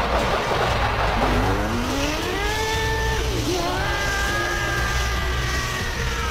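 Fight-animation soundtrack: a rush of noise, then from about a second in an animated character's scream rising in pitch. The scream breaks briefly midway and is then held high, over a steady low rumble.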